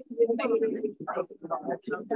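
Indistinct speech: people talking, the words not made out.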